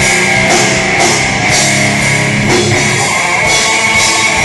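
Death metal band playing live: distorted electric guitars over a drum kit, loud and steady, with hits that land about every half second.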